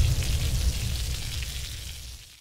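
Sound effect for a fiery animated logo: a deep rumble with crackling noise, the tail of a boom, fading steadily.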